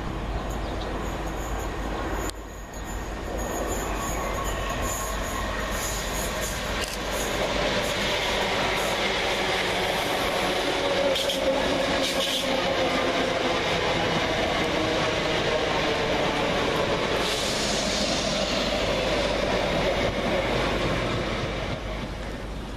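Greater Anglia Class 321 electric multiple units, two coupled sets, running into the station platform to stop. The train noise grows louder from about seven seconds in as the carriages draw alongside and stays high until near the end.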